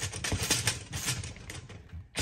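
Socket wrench ratcheting as a nut is tightened onto a cart wheel's bolt, a rapid run of small metallic clicks.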